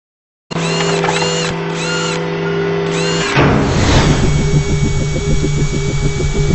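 Logo-intro sound effects: after half a second of silence come steady held electronic tones with a short chirp repeating about twice a second. A sweeping whoosh about three seconds in leads into a fast, even pulsing.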